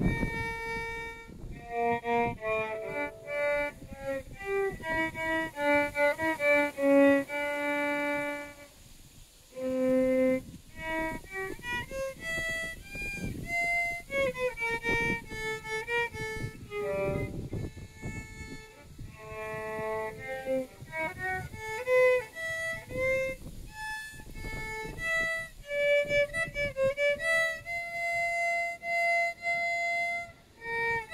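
Solo violin playing a melody of held bowed notes, with a short pause about nine seconds in.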